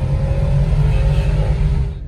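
Car engine and road noise heard from inside the cabin while driving: a steady low rumble that drops off suddenly just before the end.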